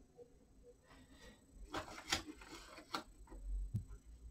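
Flat watercolour brush scrubbing and dabbing paint in a palette well: a few short scratchy strokes with small clicks, then a soft low thump near the end.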